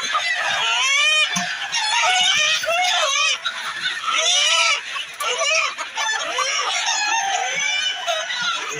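A large flock of chickens clucking and squawking, many calls overlapping without a break.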